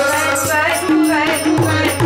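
Sikh devotional kirtan: a woman singing the lead with another voice joining in, accompanied by tabla, whose low drum strikes a steady beat in the second half.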